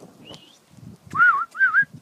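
Baby raccoon kits crying with high-pitched, whistle-like calls: a short rising chirp about a quarter second in, then two wavering cries one after the other in the second half.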